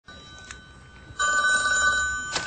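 Telephone ringing with a steady electronic tone, faint at first and then loud from about a second in: an incoming call.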